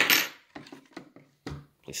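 A removed steel bolt clinks sharply with a brief ring as it is set down, followed by light handling clicks and a dull wooden knock about one and a half seconds in as the painted board of a folding wooden pistol rest is swung upright on its hinge.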